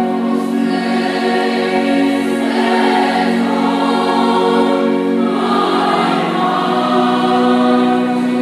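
Gospel choir singing long held chords in a church, led by a conductor. The chord changes about two-thirds of the way through.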